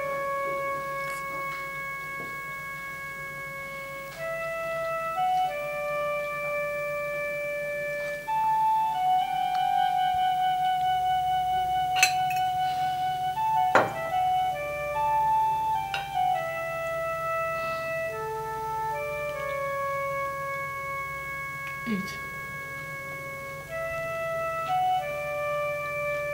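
Background film-score music on an electronic keyboard with an organ-like sound: a slow melody of long held notes. A couple of short sharp clicks come about halfway through.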